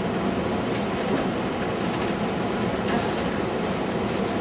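Steady room noise, a even hiss and rumble, with a few faint ticks.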